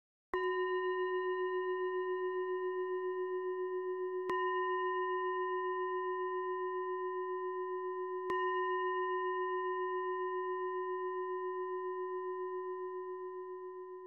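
A singing bowl used as a meditation bell, struck three times about four seconds apart to mark the close of the meditation. Each strike rings on in one long wobbling tone that overlaps the next and slowly fades near the end.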